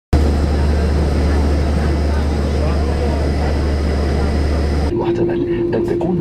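Loud, steady roar and low rumble of an airliner's cabin noise that cuts off abruptly about five seconds in. It gives way to a cabin PA announcement over a steady hum.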